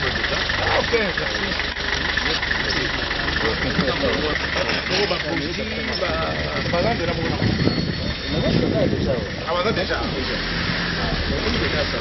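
A minibus engine idling steadily under several men talking.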